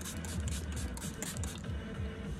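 Pump bottle of makeup setting spray misting the face in a quick run of short spritzes, about four or five a second, stopping shortly before the end.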